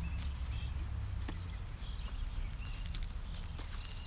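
Footsteps on soft garden soil, with a steady low rumble on the microphone and a few faint clicks.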